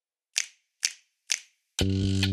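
Three sharp, evenly spaced clicks about half a second apart, counting the song in. The band then comes in on the next beat near the end with a loud chord.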